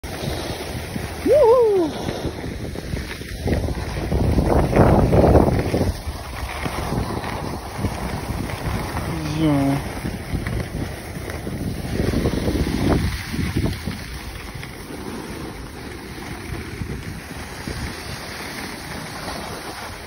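Wind buffeting the microphone and skis running over packed, groomed snow during a downhill run, swelling louder around four to six seconds in and again near thirteen seconds. A person's voice calls out briefly about a second and a half in and again near ten seconds.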